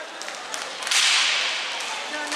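An inline hockey shot about a second in: a sharp crack of stick on puck that rings on in the rink hall's echo, after a few lighter clicks of sticks and puck.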